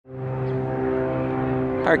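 A steady, low mechanical hum at one fixed pitch, with a man's voice starting near the end.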